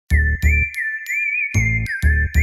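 Electronic logo jingle starting suddenly out of silence: a high, warbling synth tone with bright dings over it and heavy bass hits, two close together at the start and a third near the end.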